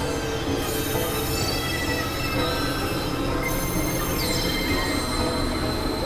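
Experimental electronic drone: a dense, steady synthesizer noise wall of many sustained high tones over a low hum, with a thin high tone joining about four seconds in.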